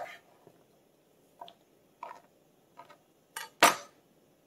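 A kitchen knife knocking on a plastic cutting board: a sharp click at the start, a few faint taps, then one loud knock near the end as the knife is laid down on the board.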